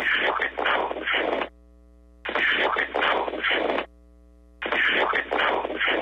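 A 1.6-second snippet of a recorded 911 phone call played three times in a row, with short pauses between: a man's muffled words buried in heavy hiss, with thin, telephone-like sound. These are the disputed words following an f-word, which some listeners hear as a racial slur and others don't.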